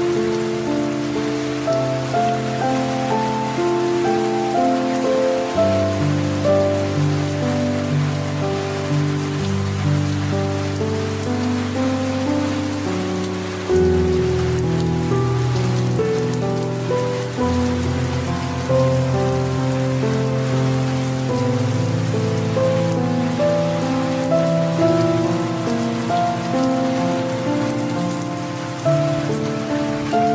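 Steady rain falling, with slow, soft instrumental music over it: held notes and a low bass note that changes about every four seconds.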